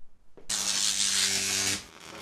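Electric buzzing sound effect for an animated light bulb switching on: a steady hum mixed with loud hiss that starts about half a second in, lasts just over a second, then cuts off sharply.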